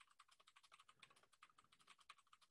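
Faint, rapid typing on a computer keyboard, a quick run of light key clicks.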